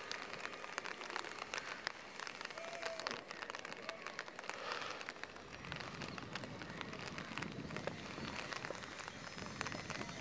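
Rain falling, a steady patter of drops made of many small irregular ticks. A short faint whistle-like note sounds about three seconds in.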